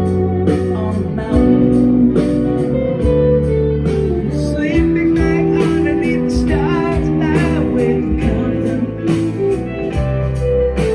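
A rock band playing live through a concert PA: bass, drums, electric guitar and keyboards in a passage without lyrics. A lead line that bends in pitch comes in about halfway through.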